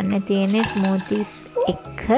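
Small plastic children's bowls clattering on a high-chair tray as a toddler handles them, a few light knocks and scrapes in the first second, over background music.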